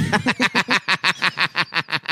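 Hard laughter from a person, a fast run of breathy pulses, about eight a second.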